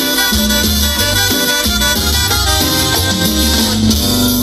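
Live cumbia band playing an instrumental stretch, with a pulsing bass, drums and hand percussion under the melody instruments.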